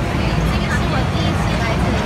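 Busy street ambience: a steady traffic rumble with people talking in the background.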